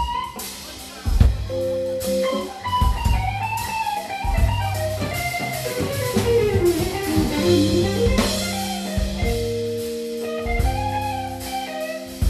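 Live band playing instrumentally: drum kit, electric bass and electric guitar, with a wandering melodic line that glides down and back up midway.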